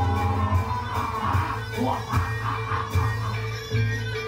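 Live music accompanying a barongan dance: loud bass notes that repeat and break off every second or so, under steady melodic instrument lines.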